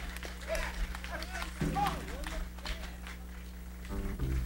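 A quiet lull between tunes at an outdoor concert: faint, indistinct voices over a steady low hum, with a low pitched note entering about one and a half seconds in.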